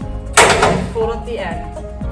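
The hinged metal foot-end panel of an oversize metal rental casket is swung shut with one loud clang about half a second in, ringing briefly as it dies away.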